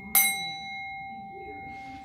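A metal bell struck once, a quarter of a second in, over the fading ring of an earlier strike. Its clear, steady tone rings on without dying away.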